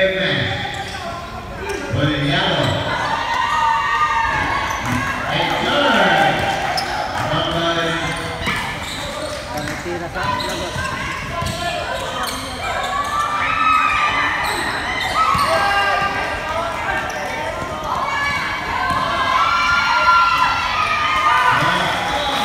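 Basketball being dribbled and bounced on a gym court during a game, with players and spectators calling out and talking throughout, in a large indoor hall.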